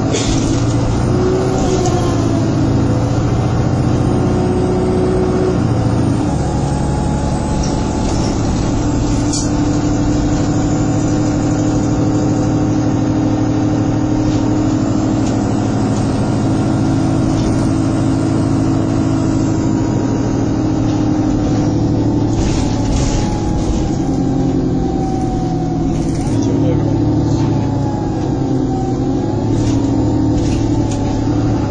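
Engine and drivetrain of the bus running continuously as it travels, heard from inside the passenger saloon, with the engine note rising and falling a few times as it changes speed. Short knocks and rattles from the bodywork come through now and then.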